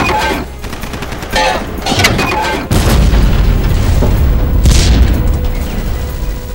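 War-film battle sound effects: sharp gunshots in the first two seconds, then from about three seconds in a heavy, continuous low rumble of explosions, with music underneath.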